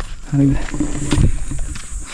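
A man's voice in short, low fragments over a steady low rumble of wind on the microphone.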